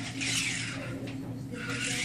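Two brief rasping swishes from a golf club brushing and rubbing during slow practice swings, one at the start and one near the end, over a steady low room hum.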